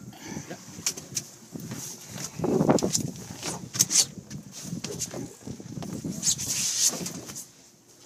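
Handling noise of a camera being passed around and moved about: rustling against clothing with scattered knocks and taps.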